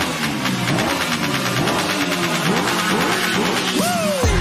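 Edited soundtrack: a buzzing, engine-like sound with short rising pitch sweeps over and over, then a bigger swoop up and back down near the end.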